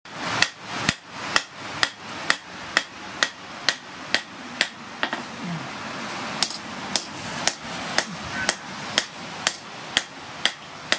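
Hand hammer forging a red-hot steel blade cut from a plough disc on an anvil: steady blows about two a second, with a pause of about a second and a half just past the middle.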